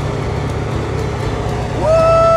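A steady low vehicle-engine rumble, as for the toy trucks on screen. Near the end a high, cartoon-like voice starts with a long held note.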